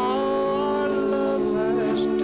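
Country song: a singer holds a long wavering note over a band accompaniment, then starts a new phrase near the end.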